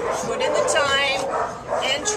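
Year-old pit bull puppy whining and yipping: a high-pitched cry that bends up and down about the middle, and another rising one near the end.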